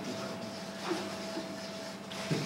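A marker scratching on paper during writing, over a steady low hum.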